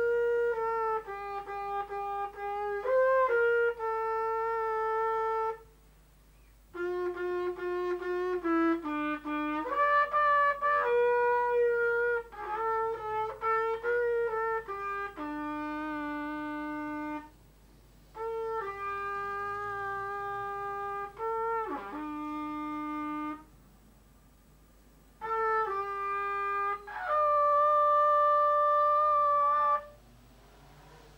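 A trumpet playing a slow solo melody of held notes, with a few pitch slides, in four phrases with brief pauses between them; the last phrase ends on a long held higher note.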